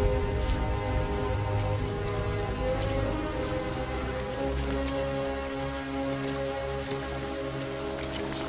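Heavy rain falling steadily on water and mud in a film soundtrack, under slow, sustained music chords and a low rumble.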